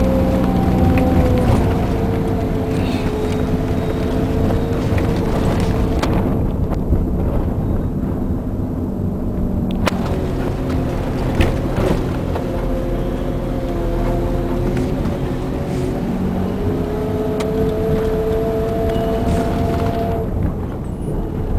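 Taxi engine and road noise heard inside the cabin while driving: a steady hum whose pitch slowly dips and rises with speed, over low rumble, with a few knocks from bumps.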